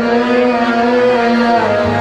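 Arabic wedding folk music in a break between sung lines: a buzzy, reed-like melody holds long notes with small pitch slides, and a lower held tone comes in near the end.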